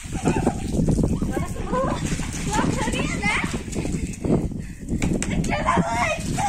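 Water from a garden hose splashing on concrete and on a child, with children shouting and squealing over it.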